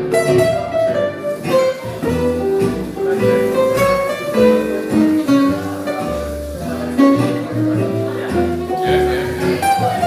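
Live acoustic band music: two acoustic guitars and a plucked upright double bass playing an instrumental passage, the bass moving note by note beneath the guitars.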